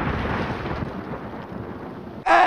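Rumbling tail of an explosion sound effect, a dense noise that slowly dies away.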